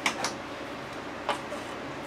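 Three light clicks of a small metal clamp and a wooden block being handled and picked up off the saw table, two close together at the start and one about a second later, over a steady low shop hum.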